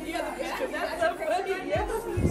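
Several women chatting over one another in a large room, with no one voice clear.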